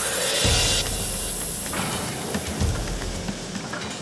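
Hot-rolling mill working a red-hot stainless steel block: a loud, steady hiss with a low rumble underneath, opening with a rising whoosh.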